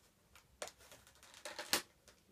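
Parcel packaging being handled by hand: a few short, sharp crinkles and clicks of tissue paper and a small plastic tub, the loudest near the end.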